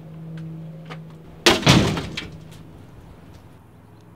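A low steady hum, then a sudden loud crash about a second and a half in, with a second hit just after, dying away over about a second.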